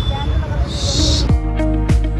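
Outdoor background noise with a brief hiss, then background music comes in about two-thirds of the way through. The music has sustained tones over a deep bass beat that drops in pitch on each hit.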